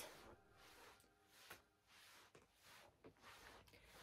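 Near silence, with one faint click about a second and a half in.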